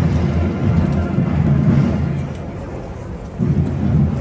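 Wind buffeting a phone microphone: a heavy low rumble in two gusts, the first easing off about halfway through and the second building again near the end.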